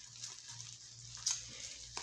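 Faint crinkling and rustling of plastic bubble wrap as fingers pick at and pull it, with one brief louder crackle about a second and a quarter in.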